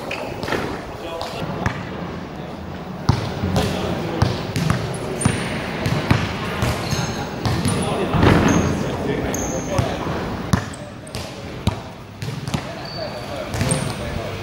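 A basketball being dribbled and bouncing on a hard court, a run of sharp thuds throughout, during one-on-one play.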